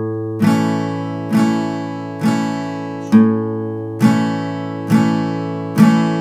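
Vantage acoustic guitar playing an A major chord in a slow, steady bass-note strumming pattern: three strums, then the open A string picked alone about three seconds in, then three more strums. The low A bass note keeps ringing under the strummed chords.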